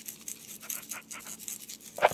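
A decorative salt shaker shaken repeatedly over sliced tomatoes, giving quick, irregular scratchy rattles, several a second. It is a fancy shaker that pours poorly, so it takes many shakes.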